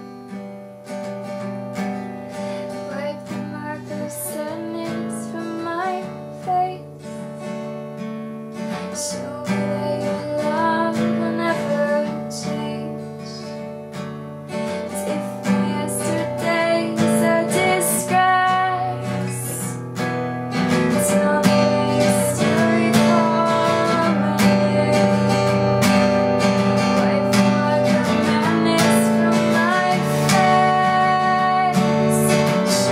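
A Takamine acoustic guitar strummed, with a woman's voice singing over it. The playing gets louder and fuller about two-thirds of the way in.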